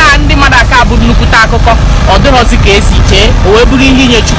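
A man talking over a loud, steady low rumble.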